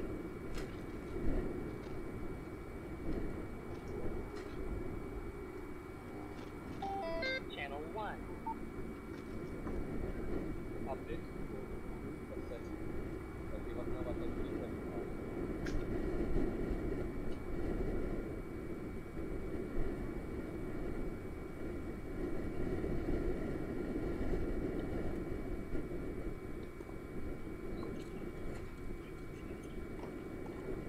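Tennis court ambience: a steady background rumble with indistinct distant voices and a few isolated sharp knocks.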